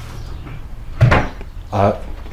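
A single sharp knock about halfway through, followed by short bits of voice.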